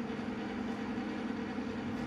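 A steady low hum with a few held tones underneath.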